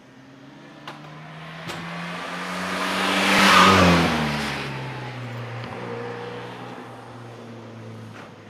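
Classic Mini's four-cylinder engine driven hard past at close range on wet tarmac, with tyre hiss. It grows louder as the car approaches, peaks as it passes about three and a half seconds in, then drops in pitch and fades as it drives away.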